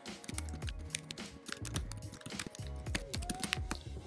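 Typing on a computer keyboard, a run of irregular key clicks, over quiet background music.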